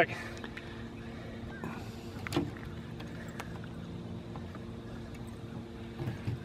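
Steady, fairly quiet low hum of a boat's motor running at idle, with a few faint clicks and one sharper tap a little over two seconds in.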